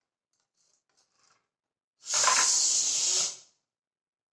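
Floor-standing bike pump worked through one downstroke of the handle, air hissing out for about a second and a half, after a few faint ticks.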